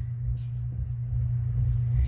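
A steady low hum with a rumble underneath, the background noise of the recording.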